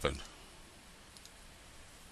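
The last syllable of a spoken word, then quiet room tone with a faint computer-mouse click about a second in as a menu item is selected.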